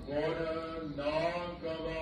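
A voice chanting a Sikh devotional prayer in slow, drawn-out phrases about a second long, each held on a sustained pitch with short breaks between them.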